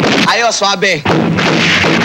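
Action-film soundtrack: a man shouts, then loud gunfire runs through the second half.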